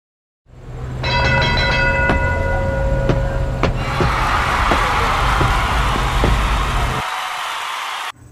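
Opening sound effects over a low rumble: a bell-like ringing tone starts about a second in, a few sharp strokes follow, then a steady rushing noise builds. The rumble cuts off about a second before the end, leaving the rushing noise alone.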